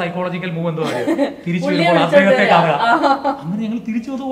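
Conversational speech mixed with chuckling laughter.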